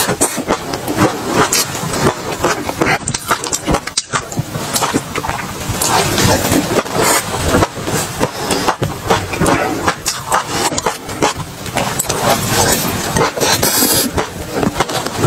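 Close-up chewing of crunchy food: a dense, irregular crackle and crunch that runs on without a break, mixed with a plastic spoon scraping in a glass bowl.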